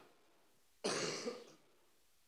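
A man coughs once, about a second in: a single short, sudden cough. He puts it down to his lungs still not having recovered from climbing Everest.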